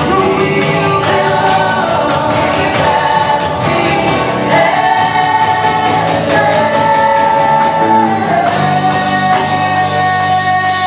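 A live worship band plays a slow, repeated chorus: a woman sings lead into a microphone over acoustic guitar and keyboard, with the congregation singing along in long held notes.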